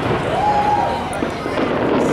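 Large fireworks display at a distance: a continuous, dense crackle of bursts, with people's voices close by.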